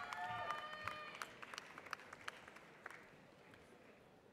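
Scattered audience applause with a few faint cheers for a graduate crossing the stage, fading away over the first couple of seconds.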